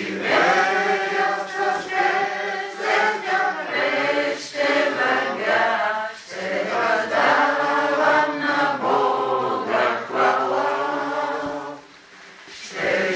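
A congregation singing a hymn together, in long held phrases with brief breaks between lines.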